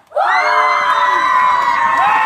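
A group of children cheering and shouting together: after a brief silence the many voices break in sharply and hold one long, loud yell.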